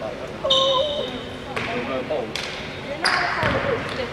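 A basketball bouncing a few times on the wooden court floor, each bounce echoing in the hall, with a short high squeak early on and players' voices calling.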